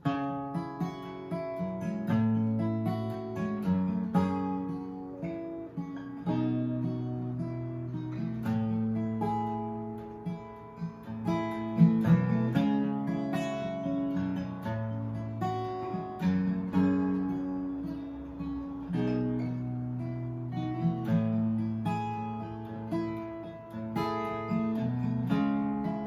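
Acoustic guitar with a capo playing a song's instrumental introduction, picked and strummed chords changing about every two seconds.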